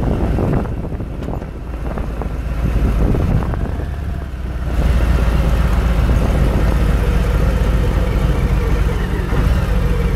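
Cruiser motorcycle engine running with wind buffeting the microphone as the bike slows, then settling into a steady idle from about halfway through.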